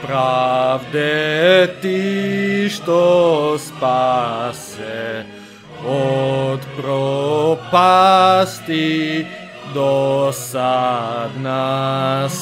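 Music: a slow chant sung in long, wavering held notes over a steady low part.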